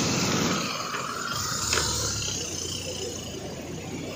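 Motorcycle engine passing in the street, its sound fading away.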